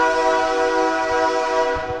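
Freight train's horn sounding one long, steady chord of several notes, fading out near the end, over the low rumble of the train rolling by.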